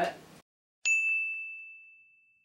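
A single edited-in 'ding' sound effect: one sharp bell-like strike with a clear ringing tone that fades away slowly, set against dead silence. It marks a title card.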